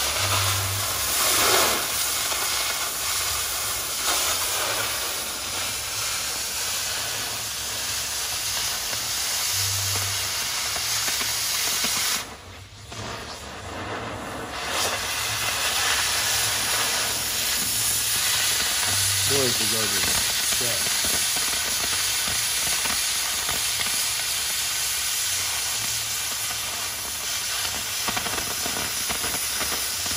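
Oxy-acetylene cutting torch hissing steadily as its oxygen jet burns through steel plate. The hiss drops away briefly about halfway through, then comes back.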